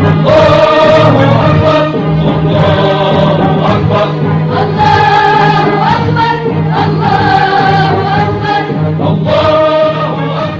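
Music with a choir singing long held notes over a steady low accompaniment, the chord shifting every couple of seconds.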